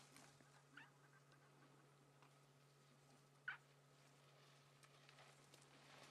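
Near silence: faint outdoor ambience with a steady low hum, a few faint clicks, and one short sharper sound about three and a half seconds in.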